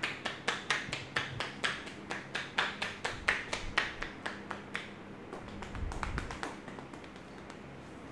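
A barber's hands tapping on a customer's head and hair in a quick, even patter of about four taps a second during a tapping head massage. The tapping stops about five seconds in, followed by a brief muffled rumble near six seconds.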